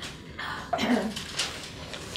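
A person coughing: a rough cough about half a second in, followed by a shorter one.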